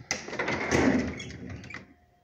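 The bottom freezer drawer of a stainless-steel refrigerator being pulled open, its basket sliding out on its rails in one sliding rumble lasting over a second.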